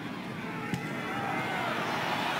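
Stadium crowd noise at a football game: many voices blending together, slowly growing louder as the play opens up. A single sharp click comes under a second in.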